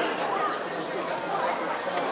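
Indistinct chatter of several voices talking over one another, with no words standing out.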